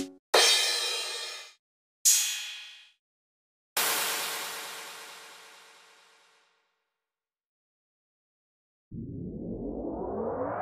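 Isolated drum samples played one at a time: two short snare hits a little under two seconds apart, then a cymbal crash that rings out and fades over about two seconds. Near the end a synthesized riser sweep starts and climbs steadily in pitch.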